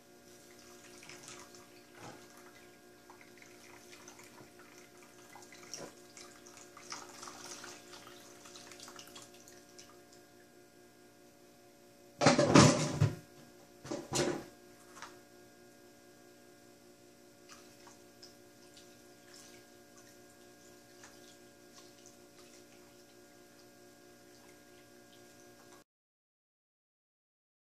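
Water and concentrate swishing in a plastic gold pan worked by hand, with two louder sloshes about twelve and fourteen seconds in. A steady hum runs underneath.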